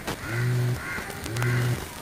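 A crow cawing three times, about a second apart, each caw a drawn-out, flat-pitched call.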